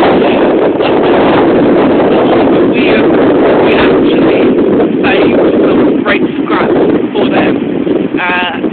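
Strong sea wind blowing over a phone's microphone: a loud, steady buffeting noise that drowns out the voice, with the gusts easing and returning from about six seconds in.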